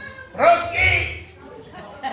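A loud vocal call that sweeps sharply upward in pitch, followed by a second higher call about half a second later.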